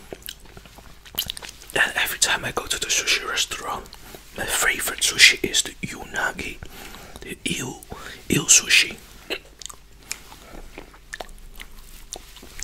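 Close-miked wet chewing and mouth clicks from eating rambutan flesh, with three stretches of whispered talk between about two and nine seconds in.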